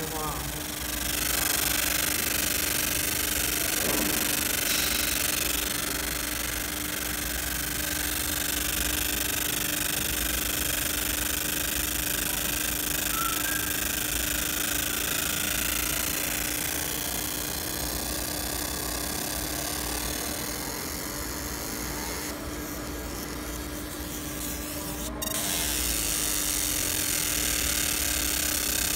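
100 W laser marking machine deep-engraving 1 mm aluminium: a steady hiss from the beam ablating the metal over a constant low hum. The hiss thins out for a few seconds near the end, then cuts back in.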